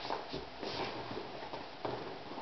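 A few faint knocks and rustles from a toddler shifting and kicking her legs in a plastic high chair, over a steady room hiss.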